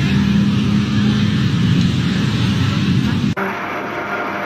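Loud, steady rumble of a car's engine and traffic noise close by. It cuts off suddenly about three seconds in, leaving a quieter hum.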